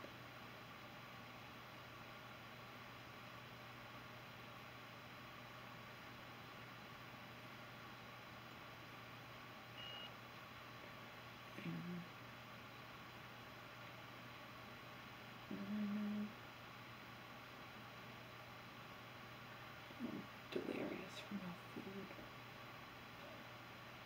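Quiet room tone with a steady low electrical hum, broken by a few brief low hums and murmurs from a woman's voice, the longest about sixteen seconds in and a cluster near the end. A short high beep sounds about ten seconds in.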